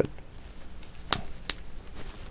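Plastic safety eye's locking washer being pushed down the ridged shank, snapping twice about a second in, the two sharp clicks less than half a second apart. Each snap is the washer locking onto the shank, a fit that is permanent.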